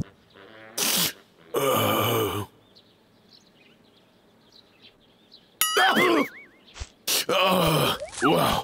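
Vocal sounds of a cartoon bear with a cold: groans and noisy, breathy bursts in two bouts, one in the first couple of seconds and another from about five and a half seconds on, with a quiet spell between them.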